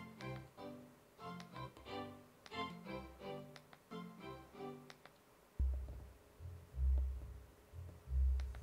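Music with short repeating notes in a steady rhythm, then from about five and a half seconds in, three deep low pulses from a subwoofer: the AV receiver's speaker-check test signal.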